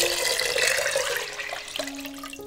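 Water pouring in a steady stream onto dry hulled barley grains in a pot, the cooking water for the barley, splashing as it fills and thinning out near the end.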